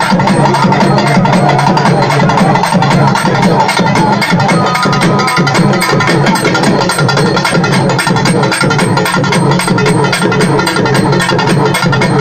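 Urumi melam drum ensemble playing loud: several stick-beaten double-headed drums hammering out a fast, dense, unbroken rhythm.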